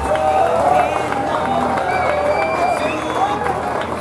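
People's voices, wavering in pitch.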